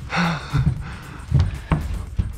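A person's short, breathy gasps, followed by two sharp knocks about a second and a half in.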